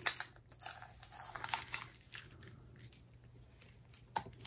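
Plastic film over a diamond painting canvas crinkling and rustling as it is handled and smoothed flat, mostly in the first two seconds, with a sharp click right at the start.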